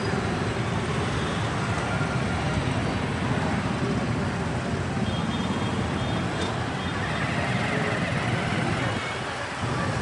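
Dense, steady din of jammed road traffic: motorbike, auto-rickshaw, car and truck engines running together. The sound dips briefly just before the end.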